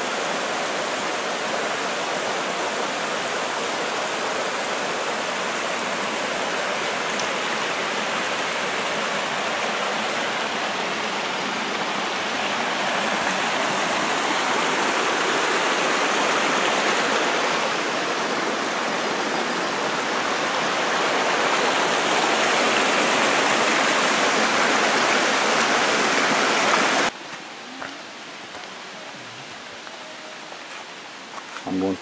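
Small mountain waterfall and stream splashing over rocks: a loud, steady rush of water that swells slightly in the second half and cuts off abruptly near the end.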